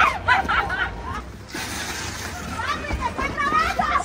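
People's voices talking and calling out, with background chatter: speech in the first second and again near the end, with a lull between.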